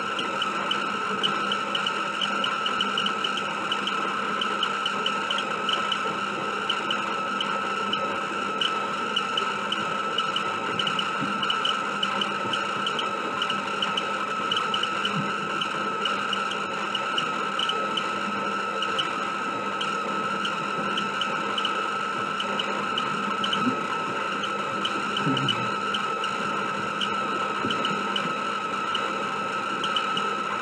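Car-shaped VHS tape rewinder running: a steady high motor whine with rapid light ticking from its spinning mechanism.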